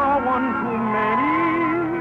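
Radio orchestra music: a sustained melody line with vibrato that slides down and back up, over held chords from the band.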